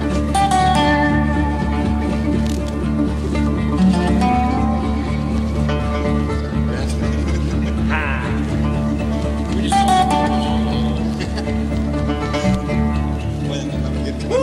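Acoustic bluegrass band playing live, with guitar, banjo, mandolin, Dobro and upright bass, in an instrumental passage with some sliding notes.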